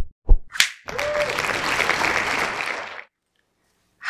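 Intro sound effect: two heavy thumps and a short rising whoosh, then about two seconds of applause that stops about three seconds in.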